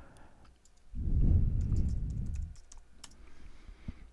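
Faint typing and clicks on a computer keyboard and mouse, with a low muffled noise lasting about a second and a half that starts about a second in and is the loudest sound.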